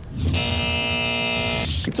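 A short musical transition sting: one sustained synthesized chord held for about a second and a half, then cut off with a brief whoosh just before the host speaks.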